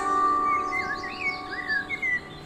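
Instrumental background music: a held chord slowly fading, with bird chirps gliding up and down over it from about half a second in.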